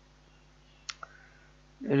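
Computer mouse clicking twice in quick succession about a second in, as icons are selected in a software dialog.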